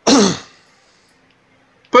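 A person's short, breathy laugh, one burst that dies away within half a second, followed by a lull of faint room tone.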